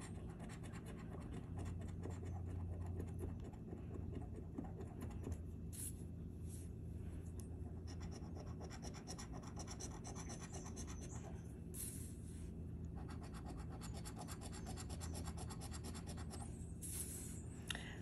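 A coin scratching the rub-off coating from a paper scratch-off lottery ticket, in quick, continuous strokes.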